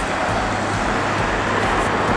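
Road traffic noise: a steady rush of tyres and engine from a vehicle passing close by on the highway.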